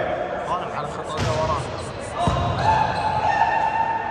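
A volleyball is struck hard by hand, a sharp smack about two seconds in with a lighter hit a second before it, echoing in a large sports hall while players shout and call.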